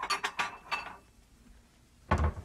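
A quick run of clinks and clatter from metal kitchen utensils knocking against cookware, bunched in the first second.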